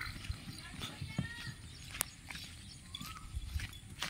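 A young water buffalo bull scuffing and stamping on dry, stubbly ground as it drops to its knees and pushes its head into the soil. The knocks are scattered and irregular, with a sharper click about halfway through.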